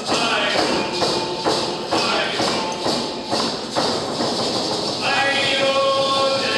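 Hand-held frame drum beaten steadily about twice a second under group singing of a Ts'msyen song. The voices are thinner at first and come in fuller about five seconds in.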